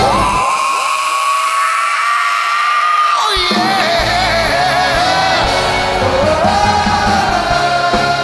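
Live rock band with a male singer holding one long, high belted note while the band drops out underneath. About three seconds in, the full band crashes back in and the singing carries on with vibrato.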